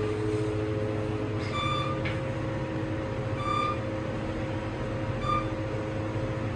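KONE machine-room-less traction elevator car travelling down, with a steady low hum of the ride and cab ventilation. Over it come four short high beeps about two seconds apart, the car's floor-passing tone as it descends past each floor.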